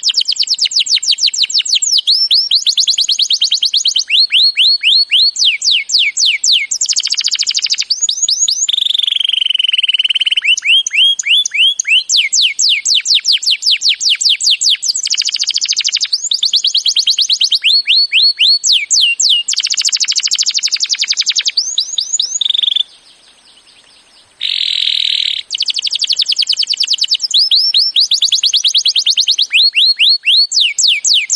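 Domestic canary singing a long song of rolling trills: runs of quick falling notes repeated many times a second, switching from one run to the next every second or two, with one brief pause about three-quarters of the way through.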